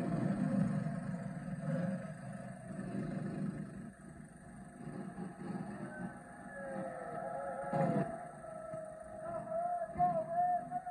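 Small go-kart engines running as karts drive around a track, heard through a TV's speaker, with a brief thump about eight seconds in.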